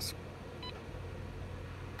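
A single short, faint beep from a Cyrix 486 laptop's built-in speaker while it boots, over a steady low hum.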